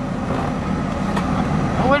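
Steady low hum of an idling car engine heard inside the cabin.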